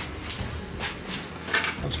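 Quiet room tone with a couple of faint clicks of handling as wooden skewers are brought to the counter, then a man's voice starting near the end.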